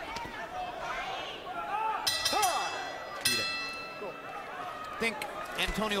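Boxing ring bell struck twice, about a second apart, each strike ringing on and fading: the signal that a round is starting. Arena crowd noise and voices run underneath.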